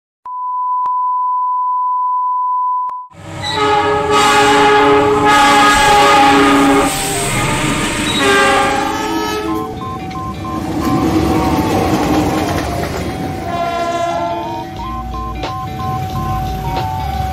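A steady electronic beep tone for about three seconds, then a multi-tone locomotive horn sounding in several loud blasts. After that comes a tune of stepped electronic tones.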